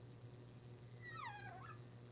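A faint squeak of a marker on a glass lightboard, gliding down in pitch for under a second about a second in, over a low steady hum.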